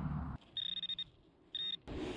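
Handheld metal-detecting pinpointer probe beeping: two high-pitched beeps, the first about half a second long and the second shorter, signalling metal in the soil.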